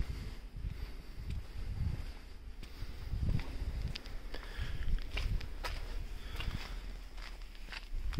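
Faint footsteps on asphalt, a soft irregular tread of about one or two steps a second, over a low steady rumble.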